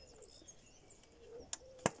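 Two sharp clicks near the end, the second louder, as ignition cables are pulled off a Mercedes M102 engine, with faint bird cooing and chirping behind.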